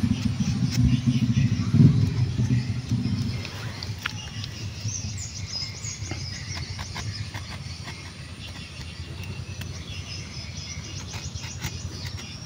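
Low hum of a passing motor vehicle's engine, fading out after about three and a half seconds. Then a quieter outdoor background with faint high bird chirps and insect ticking, over light scraping of a knife blade cutting around a branch's bark.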